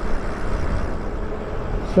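Wind rushing over the microphone and road noise as an e-bike rolls along an asphalt street: a steady, unpitched rumble with no motor whine standing out.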